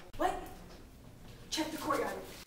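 A person's voice making two short wordless vocal sounds, one just after the start and another near the end.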